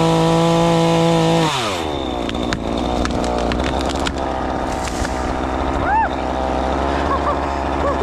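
Cordless electric chainsaw running at full speed with a steady whine, then released and spinning down about one and a half seconds in. Afterwards come a few short knocks and cracks of wood and a low background hum.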